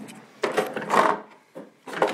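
A small drawer of a plastic parts organizer being pulled open and rummaged through for a nock: a run of scraping and rattling noises, with another starting near the end.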